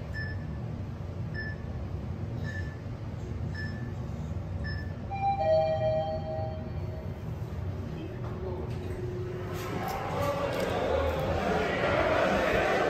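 Hotel elevator descending with a steady low hum and a short electronic beep as it passes each floor, five beeps about a second apart. Then a two-note falling chime sounds. Voices of people talking come in near the end.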